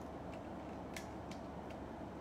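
A few light clicks of a Metal Build Freedom Gundam figure's jointed metal and plastic parts being handled and adjusted, the sharpest about a second in, over a steady low hum.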